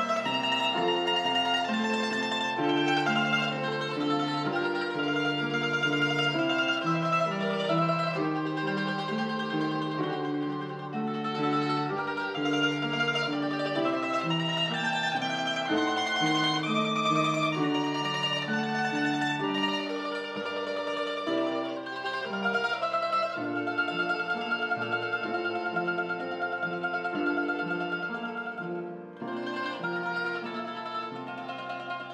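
Mandolin music: a plucked-string melody over lower accompaniment, playing continuously with a short dip in level near the end.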